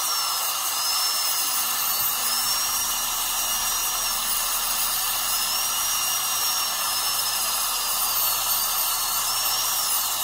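High-speed dental handpiece (dentist's drill) cutting a tooth: a high whine that wavers up and down in pitch, over a steady hiss.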